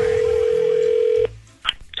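Telephone ringback tone on a call: one steady ring that cuts off sharply a little past halfway, then a short click as the line is picked up.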